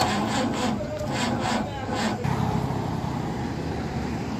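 About two seconds of quick, uneven rasping scrapes, roughly three or four a second, then a steady low road rumble of passing traffic.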